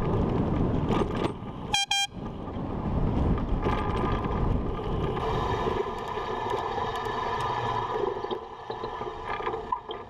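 A single short blast, about a third of a second long, from a bicycle air horn (Airzound) about two seconds in, a high, piercing tone. Around it, steady wind and road rumble from riding a bike through traffic.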